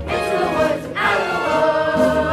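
Ensemble cast of a stage musical singing together in chorus with musical accompaniment. They hold sustained notes with vibrato, break briefly about a second in, then start a new held chord.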